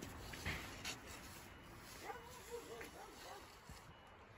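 Shovel blade scraping and knocking into sand, twice near the start. About halfway through comes a high, whimpering voice in several short rising-and-falling notes.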